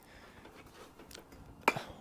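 Faint, scattered taps of a hammer on a brick as a bricklayer trims it, with one sharper knock near the end.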